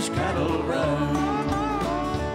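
Live country band playing between sung lines: acoustic guitars strumming over drums and a steady bass, with a melody line wavering on top in the second half.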